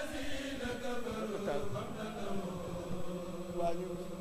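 Chanted religious recitation: a voice holding long notes that glide slowly, then stay on one steady pitch through the second half.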